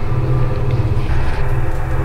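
A steady, loud low rumbling drone with sustained tones above it, running on unchanged across the cut in the picture: an ominous background music bed.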